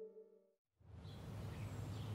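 A held chord of background music fades out in the first half second and breaks off into a moment of silence. Then steady outdoor ambience comes in: a low rumbling background noise with a few faint high bird chirps.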